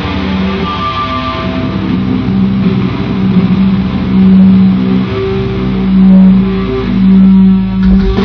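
Live heavy metal band playing loud, with electric guitar, heard amplified through an arena PA from within the audience. The band holds long low notes that swell up loud three times in the second half.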